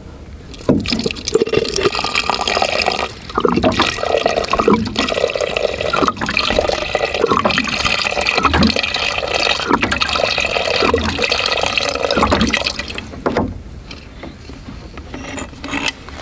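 Water running from the plastic spigot of a water jug into an enamel bowl, filling it. The flow starts about a second in and stops a few seconds before the end.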